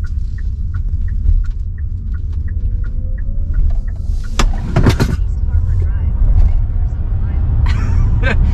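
Hyundai Ioniq 5 all-wheel-drive electric crossover accelerating hard, heard from inside the cabin. There is heavy road and tyre rumble with a faint electric-motor whine rising in pitch. A light ticking about twice a second runs through the first few seconds, and a short voice outburst comes about halfway through.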